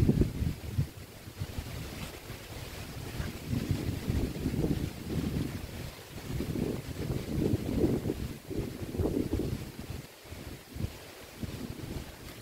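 Wind buffeting the microphone in gusts, a low rumbling noise that swells and dies away again and again.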